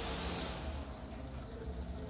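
Drone's four electric motors driving large propellers, a steady high-pitched whine that cuts off about half a second in as the power is taken off, leaving a low rumble.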